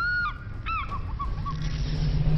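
A run of honk-like calls: two longer ones that rise and fall in pitch, then three quick shorter blips. A low steady musical note comes in about one and a half seconds in.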